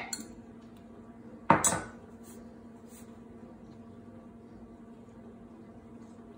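Quiet kitchen handling: a fork scraping and tapping beaten egg out of a measuring cup into a stainless steel mixing bowl of ground meat, with a few faint clinks, over a steady low hum.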